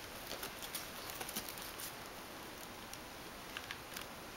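Faint handling noise from a ribbon-wrapped wicker gift basket lined with tissue paper: light scattered ticks and rustles, with a couple of slightly sharper ticks near the end.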